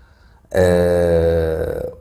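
A man's long, held hesitation sound, a drawn-out vowel at one flat pitch, starting about half a second in and lasting about a second and a half before he speaks again.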